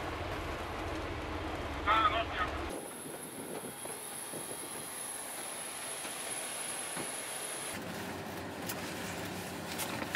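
Low vehicle-interior rumble with a brief voice about two seconds in, cutting to an even hiss with a steady high whine, then to a fainter steady hum near the end: edited ambience of a passenger vehicle and aircraft surroundings.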